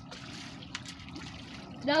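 Hands scooping through a pool of water-soaked Orbeez gel beads: a quiet sloshing and trickling of water among the beads. A voice comes in near the end.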